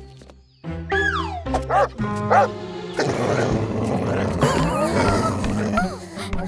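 A cartoon dog barking over background music, busiest in the second half.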